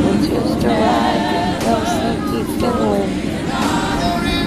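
A group of voices singing a worship song together, a cappella, with several voices wavering on held notes.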